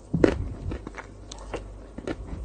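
Close-miked eating sounds of a person with chocolate ice cream: a loud bite about a quarter second in, then smaller clicking chewing and mouth sounds.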